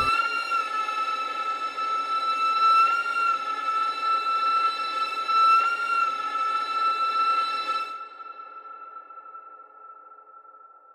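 A sustained high-pitched drone, one steady tone that wavers slightly, with a hissing wash beneath it, used as sound design for a horror title sequence. The wash cuts off about eight seconds in, and the tone carries on more quietly.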